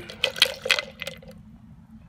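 Pennies clicking against a plastic cup and dilute hydrochloric acid sloshing as the cup is swirled. A few sharp clicks come in the first second, then it goes quieter.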